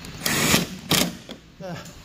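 Power drill running in two short bursts, the first about half a second long and a briefer one about a second in, driving home the 10 mm bolt that holds the headlamp in place.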